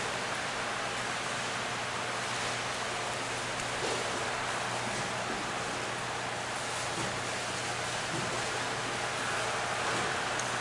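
Steady hiss of room tone and recording noise, with a low hum and a few faint soft rustles, as of Bible pages being turned.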